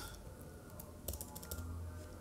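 Computer keyboard typing: a few faint keystrokes, most of them from about a second in.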